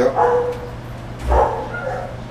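Dogs barking in the background, with one louder bark over a low thump just over a second in.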